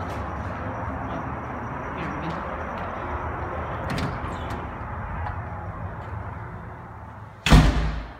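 A steady rumbling noise fades, then near the end a door shuts with one loud thud.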